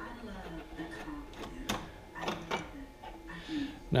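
A few light knocks and scrapes as plastic star knobs and wooden hold-down clamps are loosened on a CNC router table, with the router and dust collector switched off.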